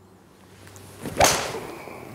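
A TaylorMade M2 hybrid swung with a short rising swish, then striking a golf ball off a hitting mat with one sharp click just after a second in. The ball is caught off the toe of the clubface.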